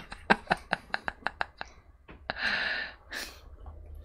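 Breathy laughter: a quick run of about ten short clicking pulses that speed up, then a long breathy exhale about two seconds in.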